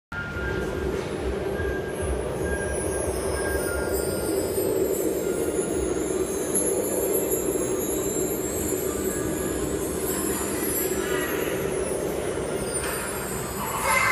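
Steady hum and noise of an indoor ice rink hall, with faint high, wavering whining tones.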